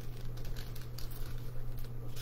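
Paper being folded and creased by hand on a tabletop: soft, irregular rustling and crinkling, over a steady low hum.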